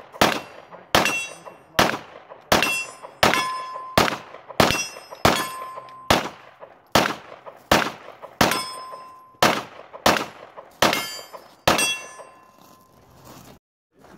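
A string of about sixteen gunshots at a steady pace, roughly one every 0.7 seconds, several followed by the ring of steel targets being hit. The shooting stops about two seconds before the end.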